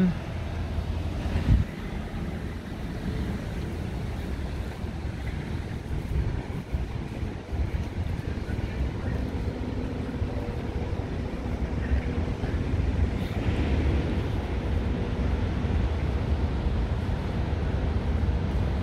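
Street ambience at a tram stop: wind rumbling on the microphone over traffic noise, with a single thump about a second and a half in.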